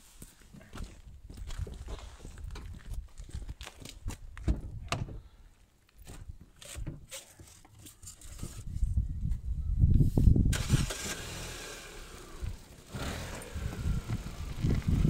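Fiat Tipo's engine being started about nine seconds in, with a loud low rumble as it turns over, then running with a steady hum. Before that come scattered handling clicks and knocks.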